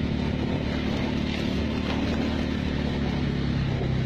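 Small motorbike engine running steadily under the riders, with wind rushing over the microphone; the engine note drops near the end.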